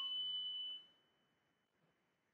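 A struck tuning fork used in biofield tuning, ringing with several high tones that fade out within the first second; one high tone lingers faintly a little longer.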